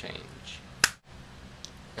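A single sharp finger snap a little under a second in, then the sound cuts out for an instant at an edit and returns to quiet room tone.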